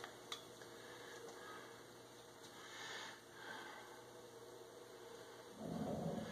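Near silence: faint room tone, with one small click just after the start.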